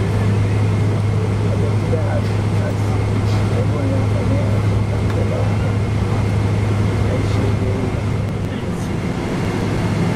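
Steady low drone inside the cabin of a Boeing 777-200 taxiing on the ground after landing: engine and air-conditioning hum. Faint passenger chatter underneath.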